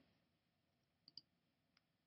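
Near silence, with two faint clicks a little after a second in and a third, weaker click near the end.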